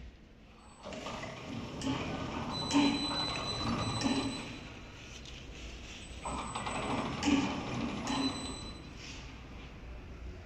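Napkin-making machine's rollers turning in two short runs, starting about a second in and again about six seconds in, with the tissue paper web rustling as it is fed through.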